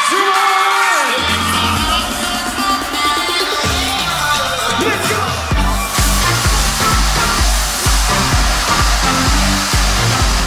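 Future house electronic dance music from a DJ set. The bass drops out briefly at the start, rising sweeps build through the middle, and about five and a half seconds in the drop lands with a heavy, steady kick drum at about two beats a second.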